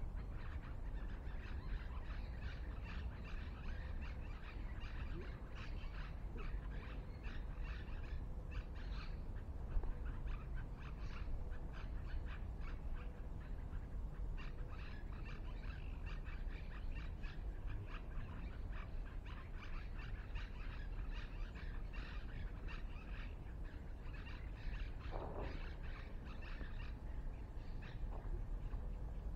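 Wild birds chirping and calling in many quick, short notes, over a steady low rumble.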